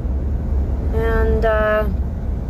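Steady low road and engine rumble heard from inside a moving car in slow highway traffic. About a second in, a woman's voice makes a short two-part sound, like a hummed or murmured word.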